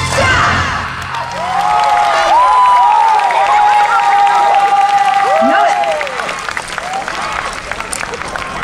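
The yosakoi dance music cuts off. The dance team then shouts together, many voices in a long held, wavering cry that lasts a few seconds, with clapping and cheering throughout.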